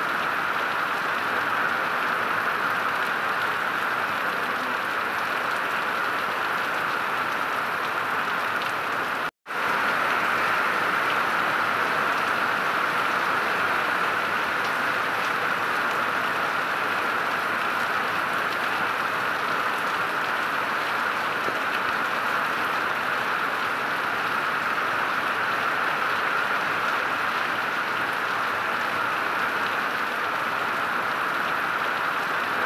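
Heavy rain pouring steadily onto paving and trees, a dense, even hiss. The sound cuts out completely for a split second about nine seconds in.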